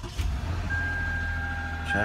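Toyota Sienna minivan's engine just started and running steadily at idle, with no battery fitted and a roof solar panel supplying the power. A steady high whine joins about a second in.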